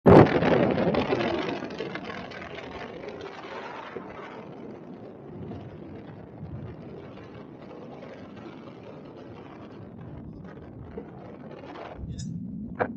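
Wind rushing over the camera microphone during a paraglider flight, loudest just at the start and settling over a couple of seconds into a steady hiss.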